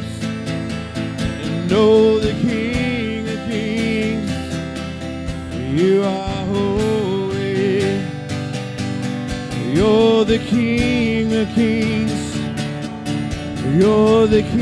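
A live worship band plays, with a voice singing slow, long-held notes over acoustic guitar and keyboard.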